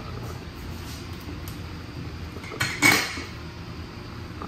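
Metal clanking: a short clank about two and a half seconds in, then a louder, ringing one just after, over a steady low rumble.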